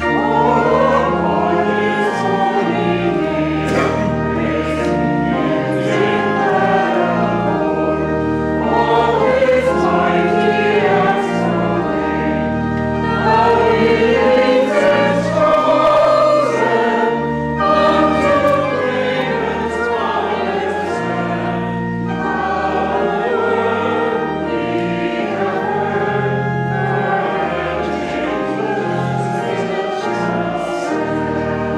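Congregation singing a hymn together, accompanied by a pipe organ holding sustained chords.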